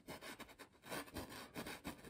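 Paintbrush bristles scratching and rubbing on canvas in short, quick, uneven strokes as oil paint is worked in and blended; faint.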